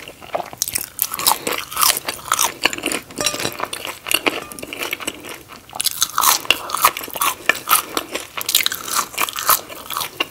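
Close-miked chewing and wet mouth sounds of eating ketchup-dipped french fries, a quick run of small clicks and smacks.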